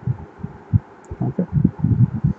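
Irregular low, muffled thumps, about five or six a second, with no speech.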